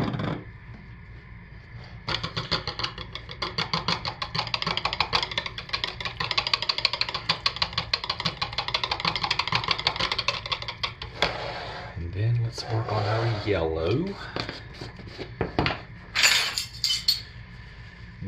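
Soap batter being stirred by hand in a plastic pitcher: a rapid, steady run of scraping clicks as the utensil strikes and scrapes the pitcher's sides, lasting about nine seconds and stopping about eleven seconds in. A short, sharp clatter follows near the end.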